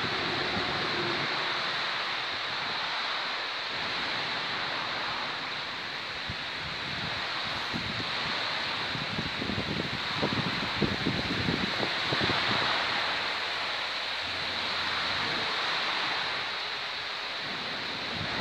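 Steady rushing hiss of running water. Irregular low bumps of wind on the microphone come in gusts around the middle.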